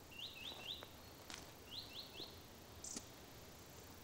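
Faint bird song: two phrases of three quick rising chirps each, about a second and a half apart, with a couple of sharp ticks in between.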